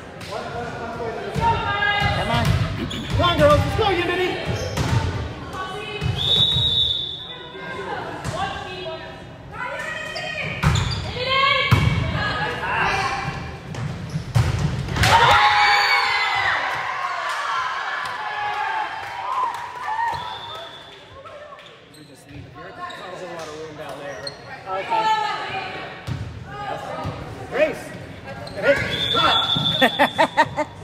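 Indoor volleyball play in a large gym: the ball being struck and hitting the hardwood floor, with players and spectators calling out. A short whistle blast sounds three times, and loud cheering and shouting break out about halfway through.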